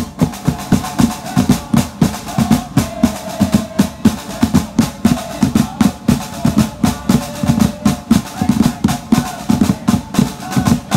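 A supporters' drum band playing a fast, steady rhythm on snare drums and a bass drum.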